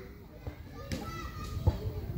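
Children playing and calling out in the background, several young voices overlapping, with a brief knock near the end.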